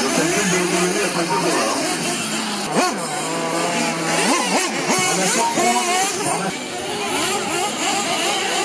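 Several 1/8-scale off-road radio-controlled buggies racing together, their motors revving up and down over one another in a constant high-pitched buzz.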